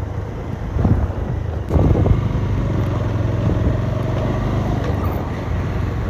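Motor vehicle engine running steadily with road and wind rumble, with louder surges about one and two seconds in.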